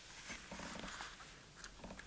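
Faint handling noise of a thin plastic seedling tray being lowered and set down on a wooden table: soft rubbing with a few light clicks and knocks.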